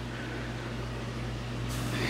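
Steady low electrical hum with an even hiss of moving water, the running sound of a reef aquarium's pumps. A short burst of brighter hiss comes near the end.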